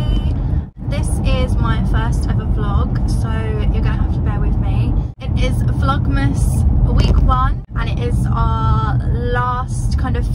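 A woman talking inside a car over a steady low rumble from the car. The sound drops out briefly three times.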